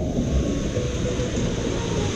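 Steady rushing noise with a heavy low rumble: water running along a water slide's run-out lane, with faint distant voices in the background.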